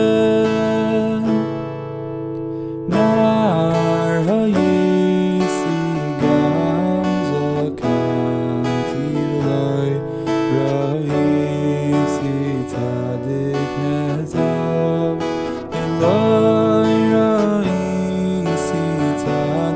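Acoustic guitar with a capo strummed through a simple G, C, A minor and D chord progression, with a man singing the melody over it.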